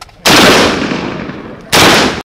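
Two gunshots from an AK-pattern assault rifle, about a second and a half apart. Each is very loud, and the first rings on in a long, slowly fading echo.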